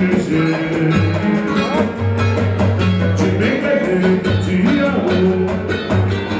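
Live samba band playing: seven-string guitar bass lines and cavaquinho over percussion keeping a steady beat.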